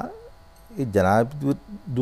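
A man's voice in studio speech: a brief pause, then one drawn-out, wavering syllable and a short sound before speech resumes.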